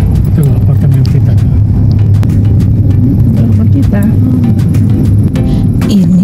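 Steady low rumble of a car's engine and tyres heard from inside the moving car's cabin.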